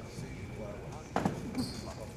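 A basketball bounces once on a hardwood gym floor about a second in, over a murmur of voices in the gym.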